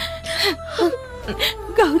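A woman weeping as she speaks: whimpering, wavering cries and gasping breaths between broken words. A steady sustained music drone runs underneath.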